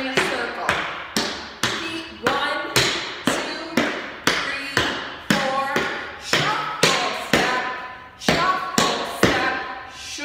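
Tap shoes striking a wooden floor in an even rhythm, about two taps a second, as a jazz tap dancer steps through a routine.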